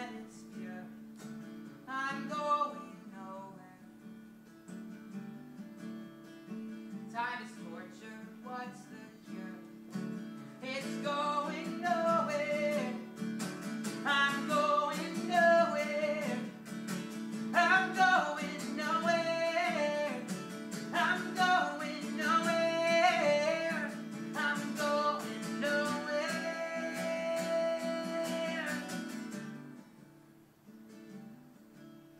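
A man singing to his own acoustic guitar. The voice grows louder about ten seconds in and ends on a long held note near the end.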